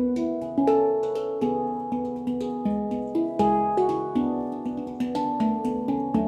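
Yishama Pantam handpans played with the hands: a rhythmic stream of struck, ringing steel notes that overlap and sustain, with quick light finger taps between the stronger strokes.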